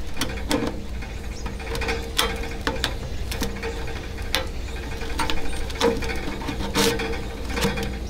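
Metal chimney pipe sections of a OneTigris Tiger Roar wood stove being twisted and pushed together, the narrow end worked into the wider one: irregular metal-on-metal scraping and clicks.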